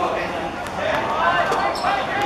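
Several voices calling out on an open football pitch, with a few short thuds of the football being played on the grass.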